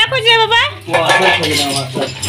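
Small loose metal parts clinking and rattling against each other as a hand rummages through a pile of them on a hard floor.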